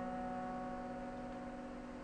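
Grand piano notes left ringing after a loud chord, several tones held together and slowly dying away with no new notes struck.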